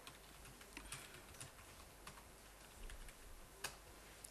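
Faint, scattered keystrokes on a computer keyboard as a terminal command is typed, a few soft clicks with a sharper one near the end.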